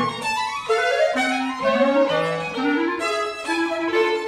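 Live chamber trio of clarinet, violin and cello playing a fast contemporary piece: a string of rising slides in the first second and a half, then quick short notes that jump between pitches.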